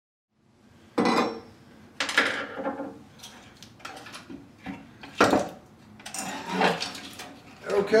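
Metal clanks and knocks from a heavy core-and-coil metal halide ballast being worked loose inside the fixture's metal housing and lifted out. There are sharp knocks about one, two and five seconds in, and a run of clatter near the end.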